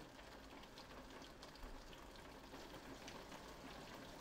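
Near silence with faint steady rain outside a window, a soft hiss with scattered light drop taps.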